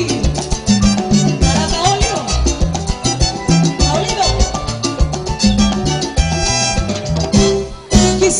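Latin cumbia band music with a steady, regular bass and drum beat under a melodic lead. The level dips briefly just before the end.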